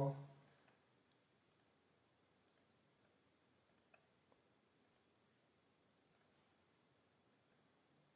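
Faint computer mouse clicks, single and in quick pairs, spread over several seconds against near-silent room tone, while text is selected and formatted in an editor.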